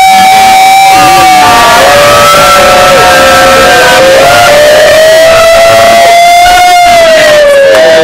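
A group of people letting out one long, loud, held cheer together, many voices sustained in overlapping pitches with a little laughter mixed in; it breaks off right at the end.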